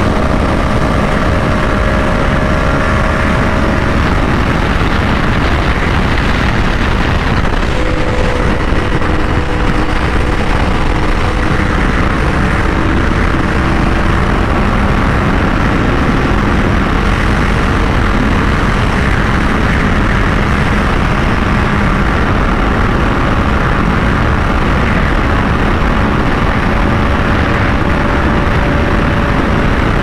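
Loud, steady wind rush on the microphone at highway speed on a 2023 Yamaha R1, with the bike's inline-four engine running steadily beneath it.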